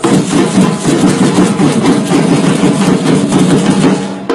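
Batucada samba drum section playing a dense, continuous roll together, with no breaks between strikes in place of the usual groove.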